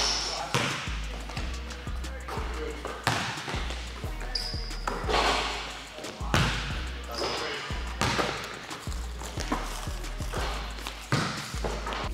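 Basketballs bouncing on a hardwood gym floor, with irregular sharp thuds of ball on floor and backboard, over background music with a heavy bass line. A few short high squeaks come through about halfway through.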